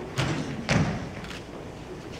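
Two thumps on the stage, about half a second apart, the second louder and deeper.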